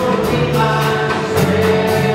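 Live worship song: a woman singing lead with several voices singing along, over strummed acoustic guitars and a lightly played drum kit.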